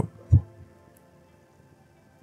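A single low thump about a third of a second in, then faint background music with quiet held notes.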